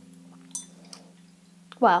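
A single short, light clink about half a second in, over faint steady background music.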